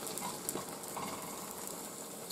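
Egg omelette frying in a nonstick pan over a gas flame: a faint, steady sizzle with scattered small crackles.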